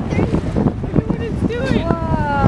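Wind buffeting the microphone on a boat at sea, a steady low rumble, with short excited exclamations from onlookers breaking in; a long drawn-out cry begins near the end.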